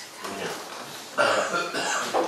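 A short, unclear vocal sound from a person in the room, starting a little past halfway through and running to the end, over low room noise.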